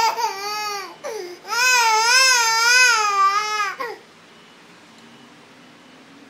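Toddler crying in long wavering wails, the longest lasting about two seconds, then falling quiet about four seconds in. She is crying for her bottle of milk at bedtime.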